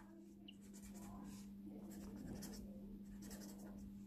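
Red felt-tip pen scribbling on paper, colouring in a block with faint, quick back-and-forth scratchy strokes, over a faint steady hum.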